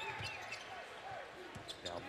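Basketball being dribbled on a hardwood court, a few bounces, over low arena crowd noise.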